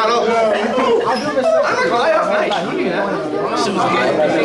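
Several young male voices talking over one another: loud, overlapping chatter with no single clear speaker.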